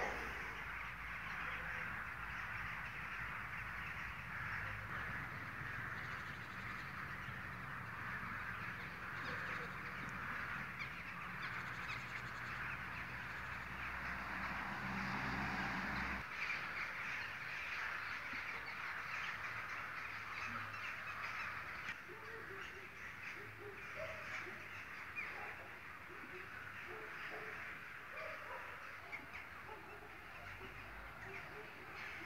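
Quiet outdoor background with crows cawing now and then. A low rumble under it stops abruptly about halfway through.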